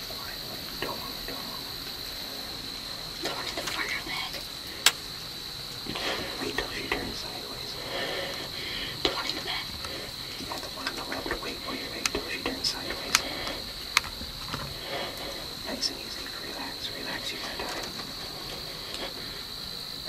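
Hushed whispering, too faint to make out, with scattered sharp clicks and rustles, over a steady high-pitched drone.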